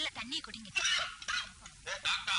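A person's voice in short, uneven bursts, like the film's dialogue around it.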